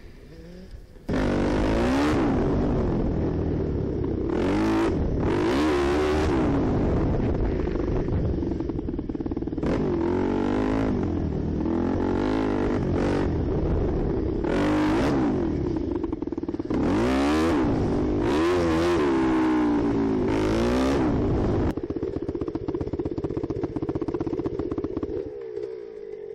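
Yamaha WR250F four-stroke single-cylinder dirt bike engine, heard from on the bike, coming in suddenly about a second in and then revving up and down again and again as it is ridden along a dirt trail. Its Lexx exhaust is cracked the whole way around and almost falling off.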